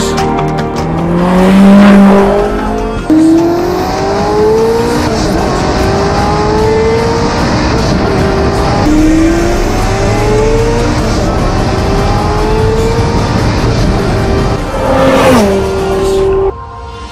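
SSC Tuatara's 5.9-litre V8 accelerating hard through the gears: the engine note climbs steadily in pitch, drops back at each upshift, and climbs again.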